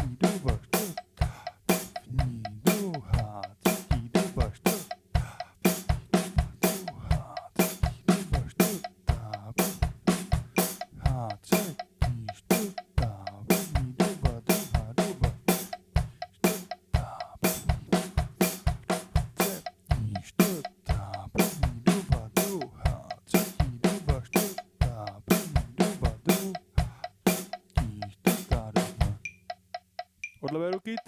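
Pearl acoustic drum kit played in a steady sixteenth-note coordination exercise: snare and bass drum strokes with hi-hat in an even, unbroken pattern. The playing stops about a second before the end.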